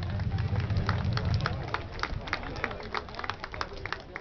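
A pickup truck's engine running with a low rumble that fades out over the first second and a half. Spectators clap irregularly, several claps a second, throughout.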